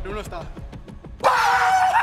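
Faint chatter, then a little over a second in a sudden loud, long held shout breaks out as a group of men react, with other voices yelling over it.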